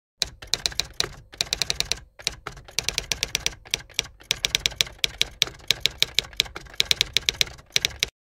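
Typewriter sound effect: rapid clacking key strikes, about eight a second, with two short breaks in the first couple of seconds, cutting off abruptly at the end.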